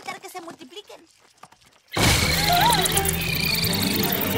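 Cartoon sound effect of a sudden swarm of parasprites, the tiny flying creatures. It bursts in loudly about two seconds in, after a near-quiet moment, as a dense whirring mass with squeaky chirps that rise and fall in pitch, over music.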